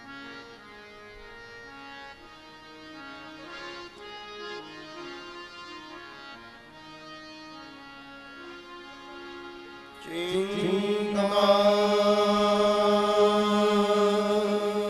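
Harmonium playing a slow melody of held notes. About ten seconds in, a man's voice enters much louder, sliding up into one long held chanted note over it.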